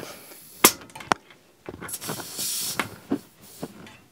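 LockNFlate air chuck being twisted on a bike tyre's Schrader valve: a couple of sharp metal clicks, then a hiss of air leaking past the chuck's seal for about a second, then a few more faint clicks.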